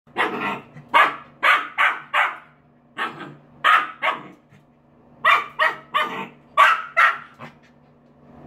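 Samoyed puppy barking at a toilet while lying on its back pawing at it: short, sharp barks in three bunches of several barks each.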